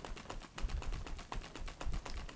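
Small handheld battery fan running, its motor giving a rapid, even clicking, with a low rumble of air hitting the microphone about halfway through.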